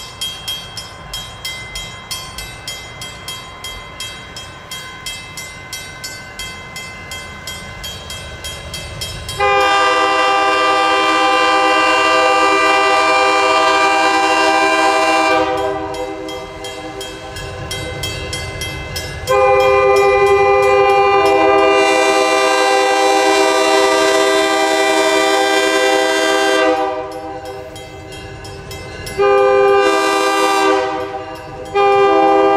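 Grade-crossing signal bell ringing steadily about twice a second as a train approaches. A locomotive air horn then sounds a multi-note chord in two long blasts, with a third blast starting near the end: the opening of the long-long-short-long grade-crossing warning.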